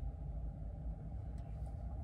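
Steady low rumble of a car idling, heard from inside its cabin.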